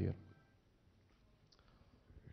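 The tail of a man's word through a handheld microphone, then a pause in near silence with one faint click about one and a half seconds in.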